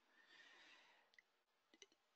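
Near silence: a pause in the speech with only faint hiss.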